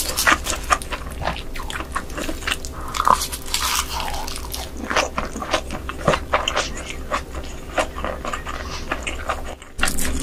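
Close-miked eating sounds: seaweed-wrapped crab fried rice being bitten and chewed, with many wet mouth clicks and crisp crackles.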